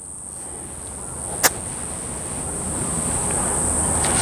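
A golf iron brushing the turf in a half practice swing: one short, sharp strike about a second and a half in. A steady high insect drone runs throughout, under a low noise that grows steadily louder.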